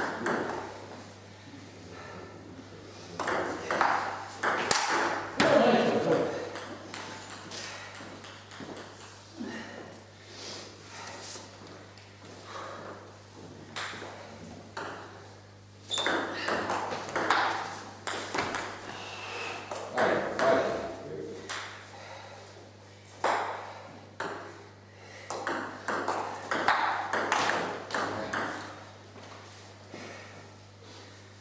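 Table tennis rallies: the ball clicking in quick series off the paddles and the table, in two long bursts of play with pauses between points.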